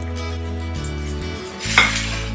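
Background music with a steady bass line. Near the end comes one short, crisp scrape of the crisp-fried toast slices being handled on a glass plate.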